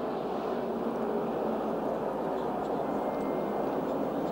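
NASCAR stock car's V8 engine running at full speed, heard from a track-level on-board camera as a steady drone mixed with wind noise.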